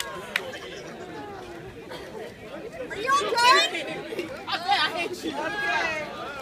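Several people talking at once in the background, with a voice rising into a loud, high-pitched call about three seconds in.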